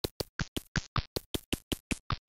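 A rapid, even run of short, glitchy sampled percussion hits from an Ableton Live drum rack, about seven a second. Each hit is randomly transposed, so it lands at a different pitch from the one before.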